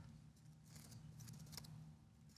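Faint computer keyboard typing: scattered light key clicks over a low steady room hum.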